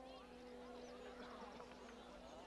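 Near silence: a faint held low tone from the film score, with faint scattered chirps of outdoor ambience.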